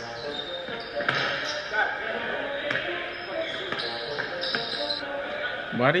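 A basketball bouncing on an indoor gym court floor, a few separate bounces, heard under background music.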